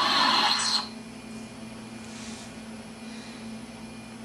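Lightsaber power-down effect from a Hasbro Ultimate FX sound board played through the hilt's speaker: the blade's hum gives way to a hissing whoosh about a second long that dies away, leaving only faint room noise.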